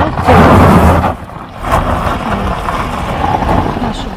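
Chevrolet sedan moving slowly across a gravel yard: engine running and tyres crunching on gravel. A loud rumble of wind on the microphone comes about half a second in.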